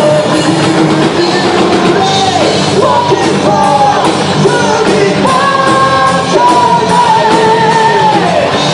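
Rock band playing live, a singer holding long notes over electric guitar and drums.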